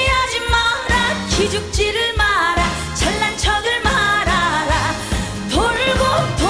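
Female trot singer singing live into a microphone over a band with a steady beat, holding notes with vibrato.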